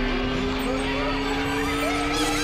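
A loud, steady two-note drone over a noisy hiss, slowly rising in pitch, with faint warbling chirps in the second half.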